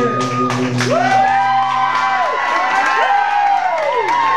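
A live rock band's final chord rings out over a steady bass note and stops about a second in. The audience follows with cheering, repeated rising-and-falling whoops and clapping.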